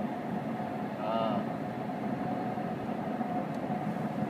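Steady low rumble and hiss of road noise inside a moving car, with a brief vocal sound about a second in.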